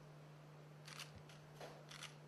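Faint, quick clicks of a camera shutter, four in about a second, over a steady low electrical hum.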